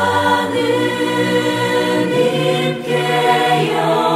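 A choir singing slow sacred music in long held notes.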